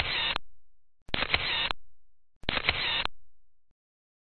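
Photo booth's camera-shutter sound effect, repeating at an even pace of about one every 1.3 seconds, three times in all. Each sounds exactly like the others: a click, a short burst, then a fade.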